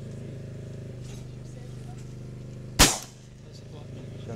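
A single shotgun shot about three quarters of the way in, sharp and loud with a short ringing tail, over a steady low hum.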